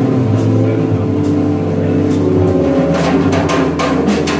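Live jazz from a keyboard and a drum kit: held keyboard chords over a low bass line that steps between notes, with cymbal and drum strokes that get busier near the end.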